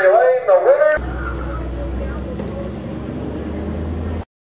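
A race announcer's voice for about the first second, then a steady low rumble of a stock race car's engine idling.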